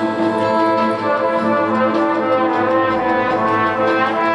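High school marching band playing, its brass section holding sustained chords.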